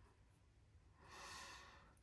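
Near silence, then a soft breath about a second in, lasting under a second.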